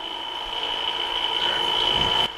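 SCK-300P spin coater spinning an oversized 6-inch substrate: a steady high whine that grows gradually louder, with the vibration that the large substrate brings on.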